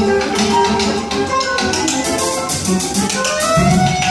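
Live jazz quartet playing: a soprano saxophone melody over double bass and a drum kit with cymbals. Near the end a note slides upward into a long held tone.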